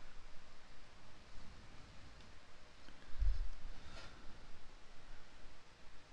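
Quiet room tone with a soft low thump a little after three seconds in and a faint click about a second later, from handling at a computer desk.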